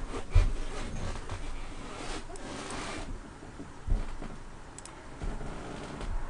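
Rustling handling noise at a computer desk with three dull knocks, the loudest about half a second in; the rustling stops about three seconds in.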